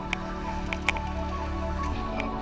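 Background music of steady held chords, with a few sharp high clicks.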